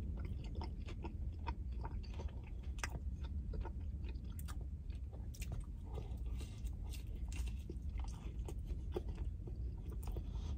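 Close-up chewing and biting of a chicken ranch wrap: many short wet mouth clicks and crunches, with another bite taken partway through, over a low steady hum.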